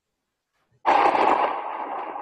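Sound effect of an animated logo intro: a sudden loud hit about a second in that carries on as a lingering, slowly fading sound.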